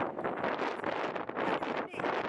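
Wind gusting hard across the camera microphone, a rushing noise that rises and falls and buries a woman's voice until her words can't be made out.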